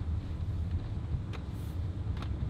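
Steady low rumble of a moving car heard from inside the cabin, with a faint click about a second and a half in.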